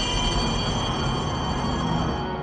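A railway carriage passing close by, with a low rumble and a steady high-pitched squeal of wheels on the rails.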